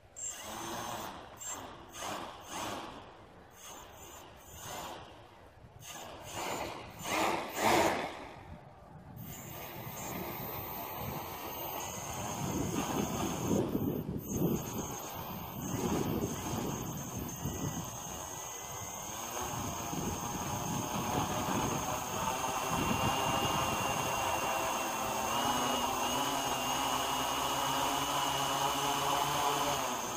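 Quadcopter's Racerstar BR2212 brushless motors with 10-inch propellers being throttled on the ground. First comes a string of about eight short bursts, then a steady whine that slowly grows louder. One motor is not spinning like the other three, which the builder puts down to an ESC not flashed with SimonK firmware.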